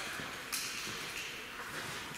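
Quiet room noise with a single sharp knock about half a second in and a few faint ticks after it.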